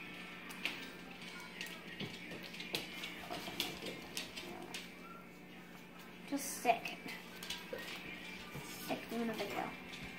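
Small plastic Lego bricks clicking and tapping as they are handled and pressed together on a wooden table, scattered irregular clicks over a faint steady hum.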